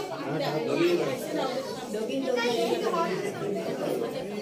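Indistinct chatter: several people talking at once, their voices overlapping.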